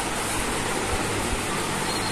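Steady background hiss with no distinct events. Just before the end a thin, high, steady beep tone begins: the Woodpecker DTE DPEX V apex locator's alert, sounding as the file clip touches the lip clip and the unit reads past the apex.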